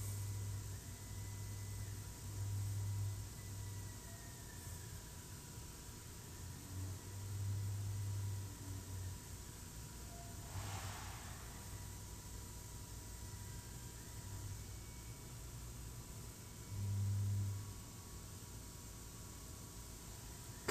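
Quiet room tone: a low hum that swells and fades every second or two, over a faint steady hiss and a thin high whine, with one short rustle about halfway through.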